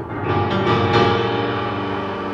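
Upright piano: a few chords struck in the first second, then left to ring on and slowly fade.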